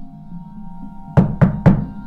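Three quick knocks on a door, about a quarter second apart, a little over a second in, over a low, steady music drone.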